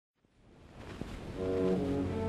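Surface hiss and a couple of clicks from an old 78 rpm shellac record as the needle starts playing. About a second and a half in, the orchestra's opening held chords come in.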